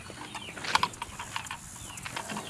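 Birds chirping in a run of short calls, with a few sharp clicks, the loudest about three-quarters of a second in.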